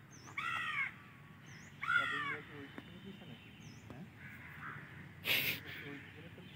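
A bird cawing twice, two short harsh calls about a second and a half apart, then a brief rush of noise near the end.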